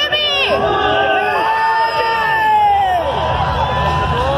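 Trackside crowd cheering and shouting, with many voices yelling over one another.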